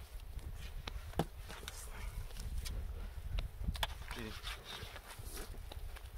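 Hands working shampoo into a wet dog's fur, with scattered short clicks and squelches, over a steady low rumble.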